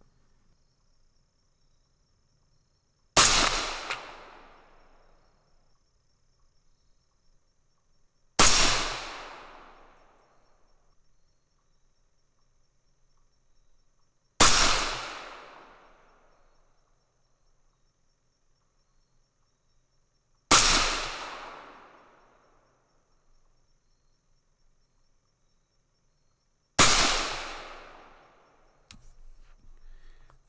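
A 6mm ARC AR-style rifle firing five single shots about six seconds apart, each a sharp report that echoes and dies away over about two seconds. The shots are a five-shot test group of hand loads with 108-grain ELD-M bullets over 29.4 grains of CFE 223, a charge beyond the maximum load for gas guns.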